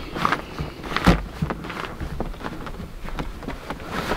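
Knocks and clicks of a rooftop tent's spreader bar and fabric roof being handled as the bar is tightened, with one louder thump about a second in.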